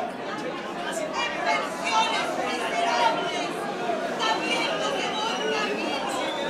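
Speech only: a performer speaking loudly into a stage microphone in a hall.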